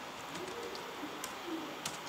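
Quiet room tone with a few faint, low, cooing calls in the background, and two sharp keyboard clicks in the second half as text is typed.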